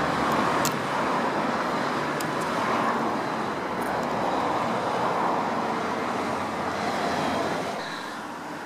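Steady rushing background noise of distant road traffic, swelling and easing slightly, with a few faint clicks.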